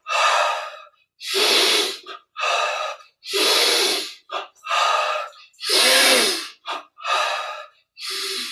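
A man breathing forcefully in and out during a breathing-and-movement exercise: a quick run of loud, rushing breaths, about one a second, each under a second long, some with a brief catch just before.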